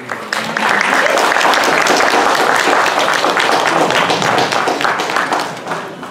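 Audience applauding: many hands clapping at once. It swells quickly about half a second in, holds, and tapers off near the end.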